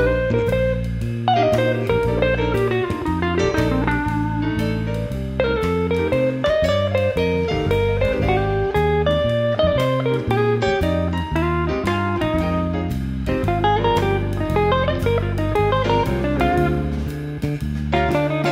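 Live jazz band playing a slow ballad. A hollow-body archtop electric guitar plays single-note melodic lines with sliding pitches over bass guitar, piano and drums.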